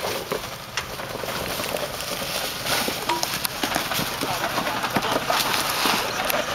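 Crunching and clattering of loose stones and dry leaves as a small 4x4 crawls slowly over a rocky trail, with irregular knocks of rock against tyre and underbody.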